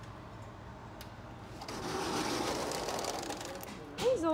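Sliding glass patio door rolling along its track, a rattling noise that starts about halfway through and fades just before the end.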